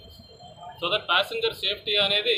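A man speaking into a bank of microphones, starting after a short pause of under a second.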